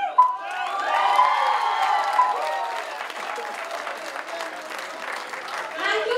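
Audience applauding, with cheering voices over the clapping in the first two seconds; the applause then thins out and grows quieter.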